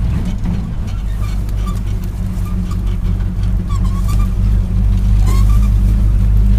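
1968 Chevy dump truck's engine running as the truck drives across rough ground, heard from inside the cab: a steady low drone that grows a little louder near the end.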